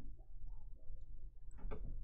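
Quiet room tone with a steady low hum, and a few faint soft taps in the second half.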